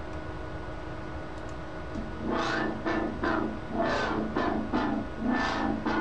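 Synth bass from the Massive software synth playing back, its filter cutoff driven by a drawn MIDI envelope so that the tone brightens and darkens in repeated sweeps. It comes in about two seconds in, after a faint steady hum.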